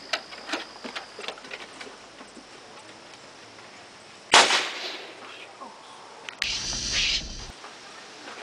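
A potato gun firing once: a sharp bang about four seconds in that dies away over half a second. About two seconds later comes a rougher noise with a low rumble, lasting about a second.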